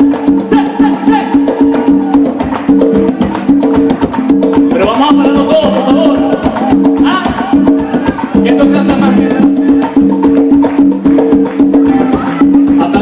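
Live band playing an upbeat Latin dance groove: a repeating bass line under drum kit and hand percussion with a steady wood-block-like click. A melodic line, sung or played, comes in near the middle.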